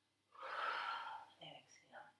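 A woman's forceful exhale, a breathy rush of about a second, timed to rounding the back and drawing elbow to knee in a yoga bird-dog flow. A short voiced breath sound follows near the end.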